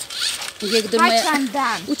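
Short rasping hisses from an aerosol spray-paint can near the start, then children's voices calling out.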